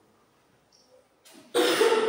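A single loud cough about a second and a half in, lasting well under a second.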